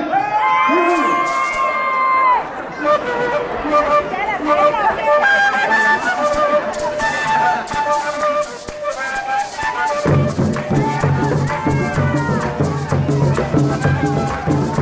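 Colombian gaitas (cane duct flutes) playing the opening melody with a maraca shaking. It starts with one long held note, and drums enter about ten seconds in.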